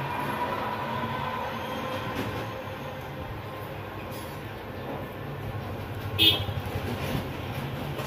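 Vinyl electrical tape being unrolled and wrapped around a wire joint, over a steady low rumbling hum. A short, sharp crackle stands out about six seconds in.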